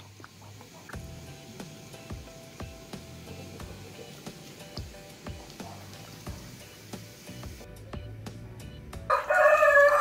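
A rooster crows loudly near the end, a held call with several steady pitches. Before it, only faint small clicks and drips of water.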